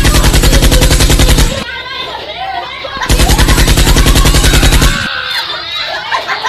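Two bursts of rapid machine-gun fire, a sound effect, each lasting nearly two seconds with a short gap of voices between them.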